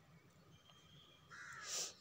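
A single faint bird call, lasting about half a second and falling in pitch, near the end.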